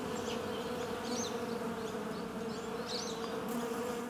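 A swarm of bees buzzing in a steady, even hum.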